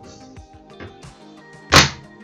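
Hinged plastic front cover of a Hunter Hydrawise Pro-HC irrigation controller swung shut, closing with one loud, sharp clack against the housing near the end. Soft background music plays under it.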